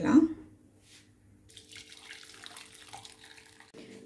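Faint, even watery hiss starting about a second and a half in and stopping just before the end: agar-agar dissolving in water as it simmers in a nonstick pan.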